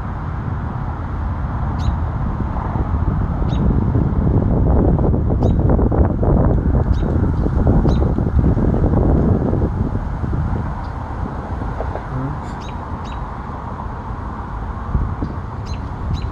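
Short, high bird chirps every second or two over a steady low rumble of wind on the microphone, which swells louder in the middle.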